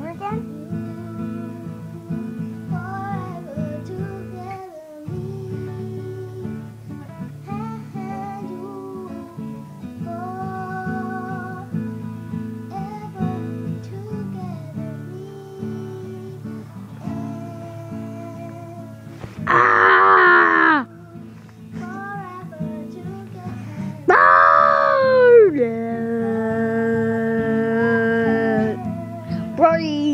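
A child singing, with an acoustic guitar playing underneath. About twenty seconds in there is a loud shout, and a few seconds later a loud falling cry that settles into a long held note near the end.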